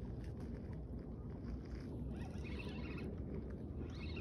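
Steady low rumble of wind on the microphone, with a faint whirring of a fishing reel being wound for about a second, around two seconds in.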